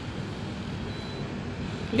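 Steady drone of distant city traffic: an even, constant low hum with no single vehicle standing out.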